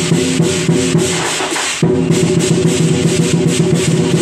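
Temple procession music: drums and cymbals keep a quick, even beat under held pitched tones. The tones drop out for about half a second just before midway, then come back sharply.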